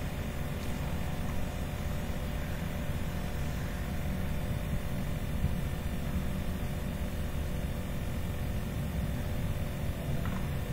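Steady background noise with a faint electrical hum, unchanging throughout, with no distinct sound events.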